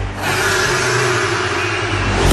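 Electronic dance music in a break: the kick drum drops out at the start, leaving a loud noisy sweep effect with a few held, slightly wavering tones under it.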